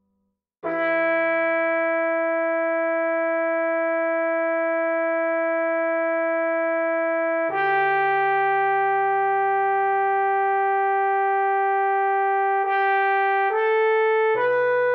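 Trombone sound from sheet-music playback: after a brief silence, one long note is held for about seven seconds, then a second long note at a lower pitch, then two shorter notes near the end.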